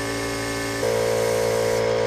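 Air compressor running steadily, feeding a paint spray gun; less than a second in it gets louder and a higher tone joins the hum.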